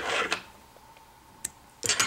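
Light handling noise of hands working a fly in a fly-tying vise: a brief rustle at the start, a single click about halfway through, and another short rustle near the end.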